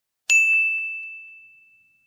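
A single bright ding, like a struck chime, a moment in, ringing out on one high tone and fading away over about a second and a half.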